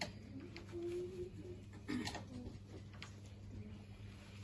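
Two short, low, pitched voice sounds, about a second in and again near two seconds in, over a steady low electrical hum and a few light clicks in a quiet room.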